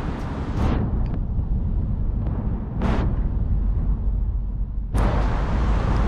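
Wind buffeting the microphone of a camera on a moving bicycle: a steady low rumble, with two short whooshes and a sudden sharpening of the sound about five seconds in.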